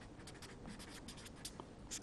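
Faint writing sounds of a felt-tip marker on paper: a quick run of short strokes as words are written out.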